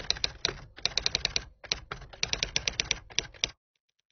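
Typing sound effect: a rapid, uneven run of typewriter-like keystroke clicks that stops about three and a half seconds in.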